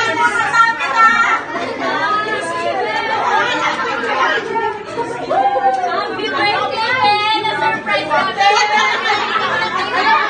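A group of women talking and exclaiming over one another: loud, overlapping chatter with no single voice standing out.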